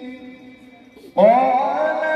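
A man's voice in slow, melodic Quran recitation (tartil): a held note fades out, a short pause for breath, then about a second in a new phrase starts with an upward glide in pitch and settles into a long held note.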